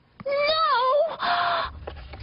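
A character's wordless whining moan, one pitched vocal sound that wavers and dips, followed by a short hiss and a low rumble.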